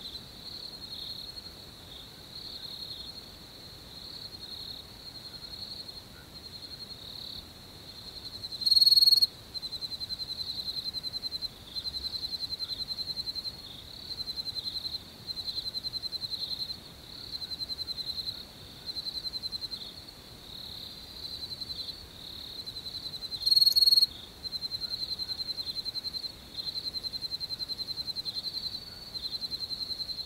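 Insects chirping in a high-pitched trill that pulses in bursts of a second or two, with two short, much louder bursts, one about nine seconds in and one about two-thirds of the way through.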